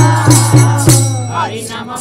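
Aarti music: rhythmic percussion strikes about three a second over a steady low drone, with a wavering melodic line above. The strikes pause for about the last second.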